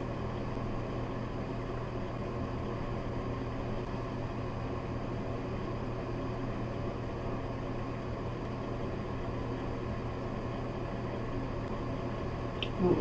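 A fan motor running with a steady low hum and an even hiss.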